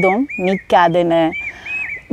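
A bird calling over and over in short, arched whistled notes, about five in two seconds, under a woman's speech.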